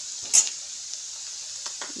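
Sliced onions sizzling as they fry in a steel kadai, with a steel spoon scraping and clinking against the pan as they are stirred. The loudest clink comes about a third of a second in, with a few lighter ones later.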